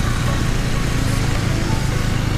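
Husqvarna Svartpilen 401's single-cylinder engine running at a steady pace under way, with wind rushing over the action camera's microphone.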